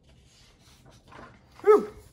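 A single short dog bark near the end, falling in pitch. Just before it, paper rustles faintly as a sheet is shifted.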